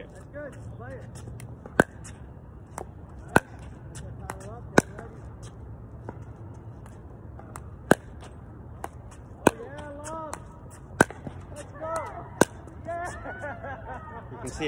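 Pickleball paddle striking a plastic pickleball: seven sharp pocks about a second and a half apart, with softer taps between them.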